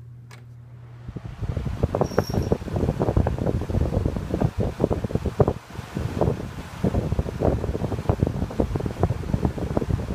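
1980s Envi-Ro-Temp 12-inch oscillating desk fan switched to high speed and running fast. At first there is a faint, steady motor hum. About a second in, its airflow starts buffeting the microphone in loud, ragged gusts of wind noise that continue throughout.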